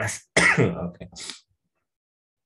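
A man clears his throat once, a short voiced sound that falls in pitch, followed by a breathy huff.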